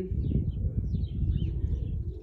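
Several faint, short bird chirps from a flock feeding on the ground, over a steady low rumble.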